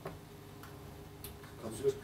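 A few light, sharp clicks from a laptop's keys or trackpad, about half a second apart, with a faint voice near the end.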